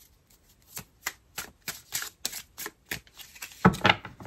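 A tarot deck being shuffled by hand: a run of crisp card slaps about three or four a second, then a louder, denser flurry of card noise near the end.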